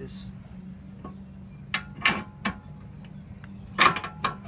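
Small metal parts of a bump steer kit clicking and knocking as they are fitted by hand onto the tie rod stud: a few sharp clicks about a second apart, the loudest near the end, over a steady low hum.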